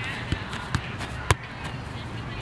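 Soccer ball being touched and kicked by foot, three short thumps under a second apart.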